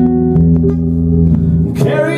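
Acoustic guitar strummed, its chords ringing between sung lines. A male voice comes back in singing near the end.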